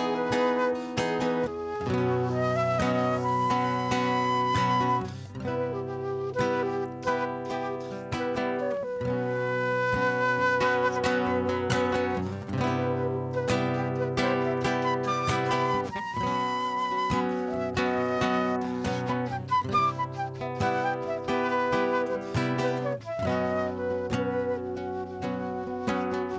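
Transverse flute playing a melody over a nylon-string classical guitar picking and strumming: an instrumental passage with no singing.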